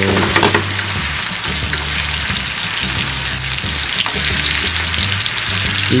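Apple slices sizzling steadily with fine crackles in melted butter and sugar in a frying pan over medium heat, caramelizing as they brown, while chopsticks turn them in the pan.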